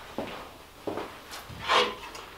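A few faint footsteps across a workshop floor in a small, quiet room, with a brief louder scuff or handling noise near the end.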